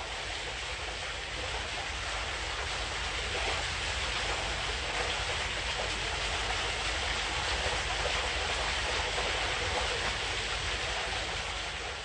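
A steady, even rushing outdoor noise with a low rumble underneath, holding level throughout.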